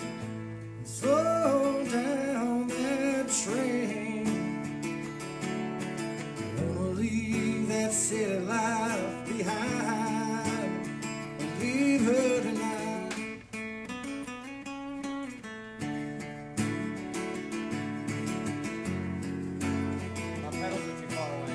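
A man singing into a microphone over a strummed acoustic guitar; the voice comes in about a second in and drops out about two-thirds of the way through, leaving the guitar playing on.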